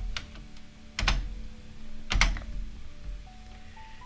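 Computer keyboard keystrokes: a few separate key presses, the loudest about one second and two seconds in, as the editor is switched to another file.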